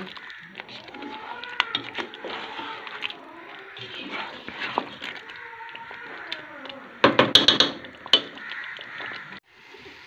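A spatula stirring chicken pieces through a frying masala gravy in a pot, with a cluster of louder scrapes and knocks against the pot about seven seconds in.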